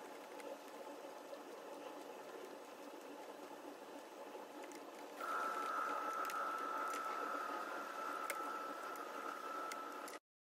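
A hand screwdriver working the terminal screws of an electrical sub-meter, heard as a few faint clicks, over a steady mechanical hum. About five seconds in, a steady high whine starts and holds.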